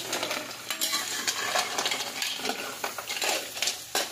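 Green mussels in their shells being stirred in a metal wok with a metal ladle: shells and ladle clattering irregularly against each other and the pan over a steady sizzle.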